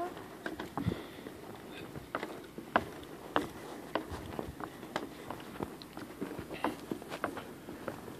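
Footsteps knocking on a suspension bridge's deck at an irregular walking pace, with the two loudest a little under three seconds in.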